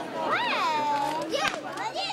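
Children's high voices calling out: one drawn-out exclamation that rises and then falls and holds, then a shorter rising call near the end, as the audience reacts to a magic trick.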